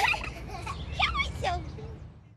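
Children's high voices in brief laughs and chatter, a few short wavering sounds about half a second apart, fading out near the end.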